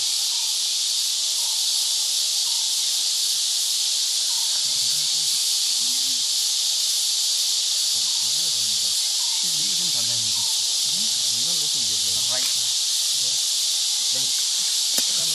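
Steady high-pitched drone of insects, likely cicadas, with faint low voices of men murmuring now and then, mostly in the second half.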